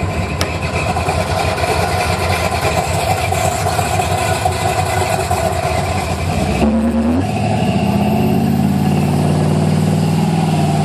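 Buick 455 cubic-inch V8 in a 1987 Regal running on the road. About seven seconds in the sound changes suddenly, and from there the engine note rises steadily as the car accelerates.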